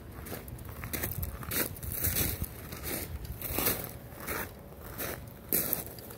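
Irregular crunching and crackling, a few short bursts a second, from a person walking with the recording phone in hand.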